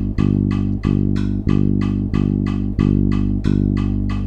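Electric bass guitar playing one low note over and over on a steady pulse, about one and a half notes a second, each note held until the next. A quarter-note pulse is being felt against seven-eight time. A metronome clicks about four times a second under it.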